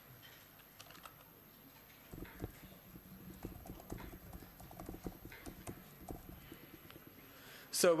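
Typing on a computer keyboard: a run of irregular key clicks starting about two seconds in, over a faint steady hum.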